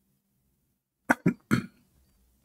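A man coughing, three quick coughs about a second in.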